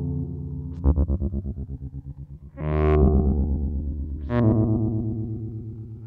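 Synton Fenix 2d modular synthesizer playing buzzy, overtone-rich notes through its built-in phaser and delay. A note about a second in repeats in quick, fading echoes, about ten a second; two later notes each open with a bright rising sweep and fade away.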